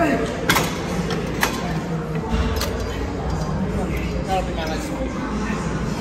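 Gym room noise: a steady hum of background voices, with two sharp clicks in the first two seconds.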